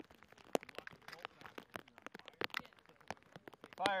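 Scattered sharp clicks and ticks at irregular intervals, the loudest about half a second in, with no run of automatic fire.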